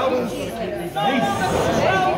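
Several voices speaking over one another, praying aloud, with no other distinct sound.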